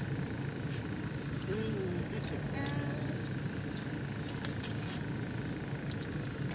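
Steady low background hum with scattered light clicks and a short murmur of a voice a few seconds in.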